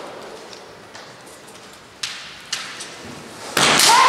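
Kendo bout on a wooden floor: two sharp knocks about two seconds in, then near the end a sudden loud clash of bamboo shinai and stamping feet as the fighters close in. A shouted kiai starts at the very end.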